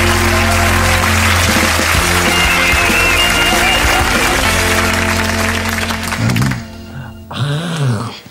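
Upbeat rock theme music with guitar for a TV sitcom's opening titles, which cuts off about six and a half seconds in, leaving only brief quieter sounds near the end.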